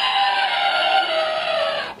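A mock crying wail voiced through a children's toy voice changer, coming out high and electronically distorted. It holds nearly level, drifting slightly lower, and cuts off abruptly near the end.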